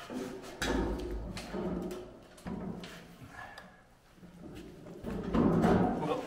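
Tubular steel chassis frame knocking and thudding as it is worked down onto a Miata subframe and driveline. Several low, booming knocks with some ringing, the loudest cluster near the end.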